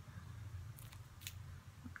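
Faint crinkling of a plastic-wrapped sticker pack being turned over in the hand, a few short rustles about a second in, over a low steady hum.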